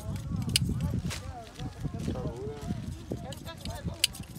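People talking in the background, with a few scattered sharp clicks.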